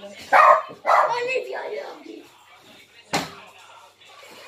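A woman laughing in two short loud bursts that trail off, then a single sharp knock about three seconds in.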